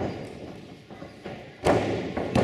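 Pro-wrestling ring impacts: a lighter thump at the start, then a heavy thud about a second and a half in, as a body hits the ring mat, with a short echo.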